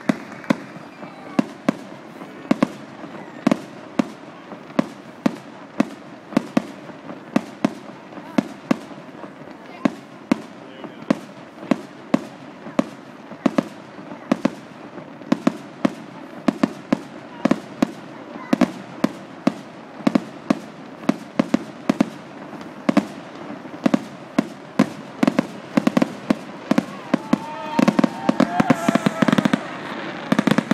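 Fireworks display going off: a steady run of sharp bangs, one to three a second, through the whole stretch, growing louder and denser near the end.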